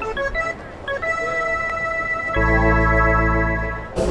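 Ballpark organ playing held chords through the stadium PA. A few short notes come in the first second or two, then a full chord with deep bass enters a little past halfway and fades just before the end.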